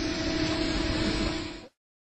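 Steady rushing background noise with a faint steady hum, cut off suddenly to dead silence about one and a half seconds in.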